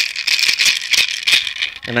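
A handmade Mexica-style gourd rattle is shaken continuously, giving a dense, hissing rattle. It stops near the end as a man starts speaking.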